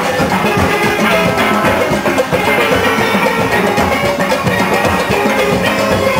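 A steelband playing live: many steel pans ringing out a melody together over a steady beat of drums and percussion, loud and unbroken.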